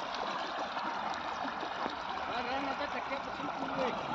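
Irrigation water from a tractor-driven PTO pump flowing across a field in a steady rush.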